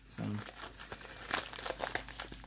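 Plastic poly mailer crinkling and crackling as it is handled and opened by hand, with a couple of louder crinkles partway through and near the end.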